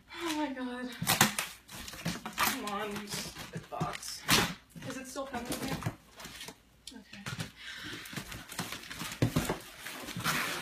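Murmured voices and laughter mixed with repeated short clicks, knocks and crinkles of packaging being handled as a box is opened.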